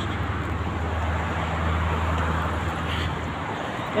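Roadside traffic noise: a steady hiss with a motor vehicle's low rumble under it, the rumble falling away about three and a half seconds in.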